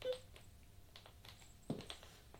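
A few faint taps of platform stiletto heels stepping on a wooden floor, the firmest one near the end.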